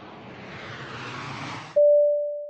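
A swelling whoosh of noise, cut off sharply near the end by a loud single electronic tone that slowly fades, the opening note of a logo sting.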